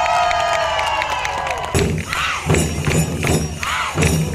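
Live Indian folk drum ensemble. A held, gliding melodic line runs alone at first. About a second and a half in, the drums come in with a fast, steady beat, with shouts and crowd cheering over them.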